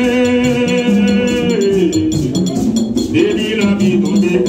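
A group of voices singing a chant with percussion. The voices hold a long note, slide down about halfway through and start a new line near the end, over steady, bell-like metallic strikes.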